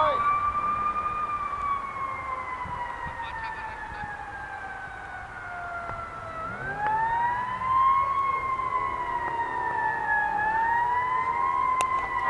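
Emergency vehicle siren in a slow wail. Its pitch falls gradually for several seconds, turns upward about six and a half seconds in, and then sweeps slowly up and down again.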